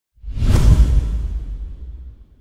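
Whoosh sound effect with a deep rumble for a title card, swelling quickly a quarter second in and fading away over the following two seconds.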